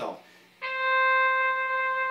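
A single long synthesizer note from a Roland SC-55 sound module, played from a DIY electronic valve instrument (a breath-driven MIDI controller with trumpet fingering). It starts about half a second in and holds one pitch, with small swells in loudness; its volume is set by breath pressure at the mouthpiece.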